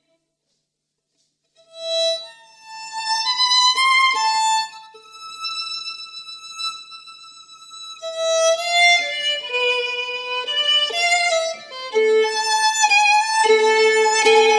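Music: a violin playing a slow melody of held notes, beginning after a short silence about a second and a half in.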